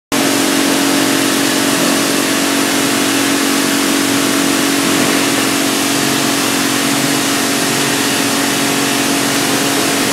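A machine running steadily: a loud, even noise with a constant hum underneath.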